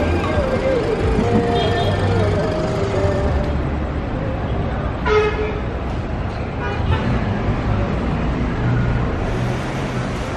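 Busy city street traffic with engines running and a vehicle horn tooting briefly about five seconds in, and more faintly about two seconds later, over background voices.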